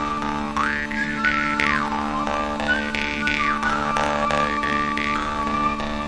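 Jaw harp (drymba) playing a carol tune over its own steady drone. The melody is picked out as bright overtones that sweep up and down, over a repeated rhythmic plucking.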